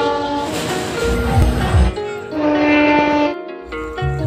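Music with a train sound laid over it: noise from a moving train for about a second and a half, then a train horn held for about a second past the middle.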